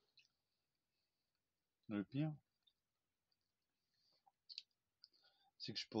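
Mostly a quiet room: a man gives a short two-part vocal sound about two seconds in, a few faint clicks follow, and he starts speaking near the end.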